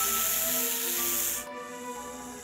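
A loud, steady hiss that cuts off abruptly about one and a half seconds in, over background music with a simple melody.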